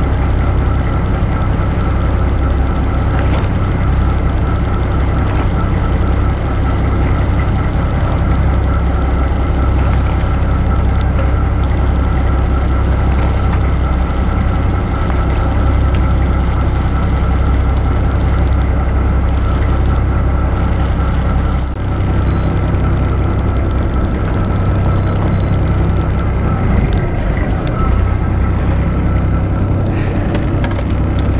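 Fishing boat's engine running steadily, a continuous low drone with a steady hum above it.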